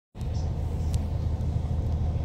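Steady low rumble inside an Irish Rail 22000 class diesel railcar, its underfloor diesel engine running.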